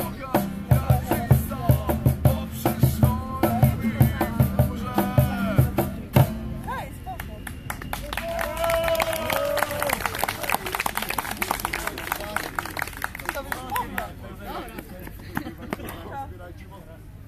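Acoustic band with acoustic guitars, a cajon beat and singing playing the last bars of a song, ending on a final hit about six seconds in. The audience then claps and cheers, dying down near the end.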